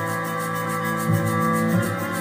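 Bowed cello playing long sustained notes over looped layers of itself, building a dense drone; a new low note enters about a second in.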